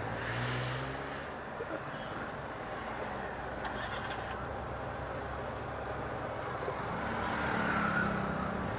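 Slow, congested road traffic heard from a motorcycle creeping along in it: a steady low engine hum over road noise, with a short hiss about half a second in.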